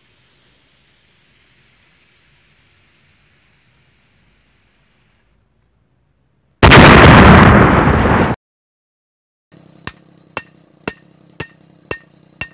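Edited-in outro sound effects: a faint hiss with a high steady whine that stops about five seconds in, then a sudden loud blast of noise lasting under two seconds, then sharp pings that ring briefly, about two a second, toward the end.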